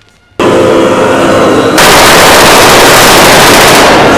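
Sustained, heavily distorted gunfire noise. It starts suddenly about half a second in and turns louder and harsher about two seconds in.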